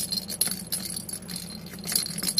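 Ball rattling and jingling around a plastic circular track cat toy as a kitten bats it, in quick irregular clicks with a ringing jingle.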